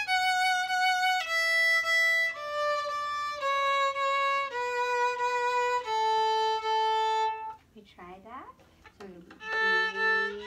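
Violin playing a descending A major scale, one clean held note about every second, stepping down to the low A about seven and a half seconds in. After a short pause, violin notes start again near the end.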